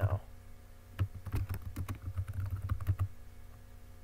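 Typing on a computer keyboard: a quick run of keystrokes lasting about two seconds, then a pause.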